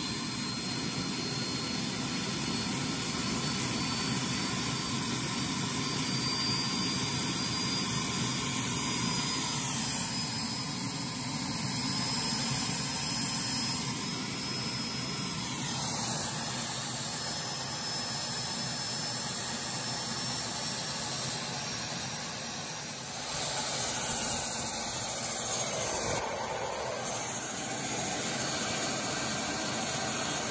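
Model gas-turbine engine of a scale Lama helicopter running at full throttle: a steady jet whine whose high tones slowly rise in pitch. It eases a little in loudness over the last few seconds.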